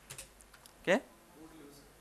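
A few quick computer keyboard keystrokes, sharp clicks close together near the start, as text is edited in a terminal.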